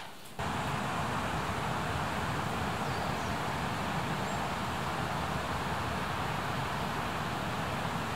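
Steady, even rushing outdoor ambience that starts abruptly just after the beginning and holds at one level, with no distinct events in it.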